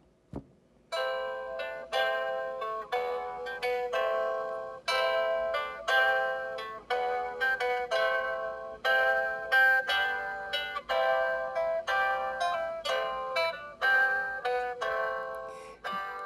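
Battery-powered music box playing a classical guitar rendition of a Christmas carol as its lid is opened. The plucked melody starts about a second in.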